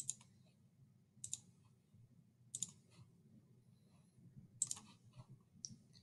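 Computer mouse clicks, a handful of faint sharp clicks with pauses between them, as a dimension is placed in the drawing software, over a low steady hum.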